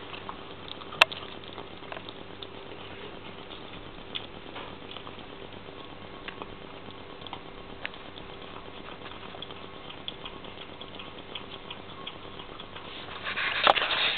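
Two young kittens eating raw meat: small wet chewing and smacking clicks scattered throughout, with one sharp click about a second in. A burst of louder rustles and knocks comes near the end.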